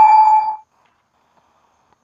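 A single metal clang: something hard struck against metal, ringing in one clear tone with higher overtones and fading away about half a second in.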